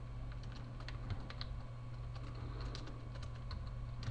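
Computer keyboard keystrokes: faint, irregular clicks as a few characters are typed, over a low steady hum.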